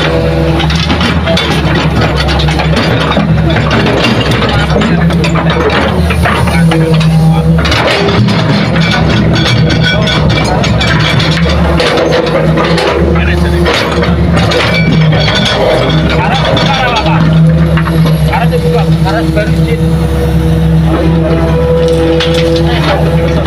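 Hitachi crawler excavator's diesel engine running steadily under digging load, its pitch shifting a little as it works. Scattered knocks come from soil and rocks being scooped and dropped into a dump truck's bed.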